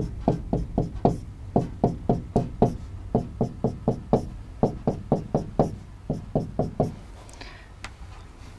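Pen stylus tapping rapidly on an interactive display screen while short tick marks are drawn one after another, about four to five knocks a second. The tapping stops about seven seconds in, followed by a brief swish of a longer stroke.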